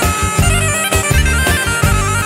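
Albanian folk dance music: a sustained, reedy wind-instrument melody over a quick, steady beat.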